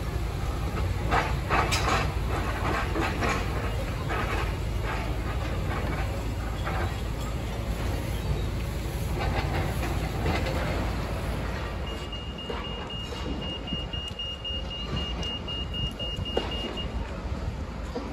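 Demolition excavators at work on a building: a steady low engine rumble with crunching and cracking of breaking concrete and debris, busiest in the first half. A thin high steady tone sounds for about five seconds in the second half.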